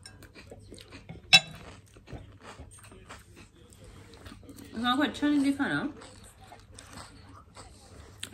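A woman eating a soft cream-filled kunafa dessert off a spoon: faint chewing and mouth clicks throughout, with one sharp click about a second in. Her voice comes in briefly about five seconds in.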